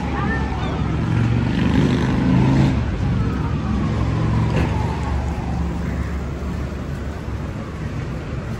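Street traffic: a motor vehicle passes close by, its engine rumble loudest about two seconds in and then fading, with a falling whine as it goes.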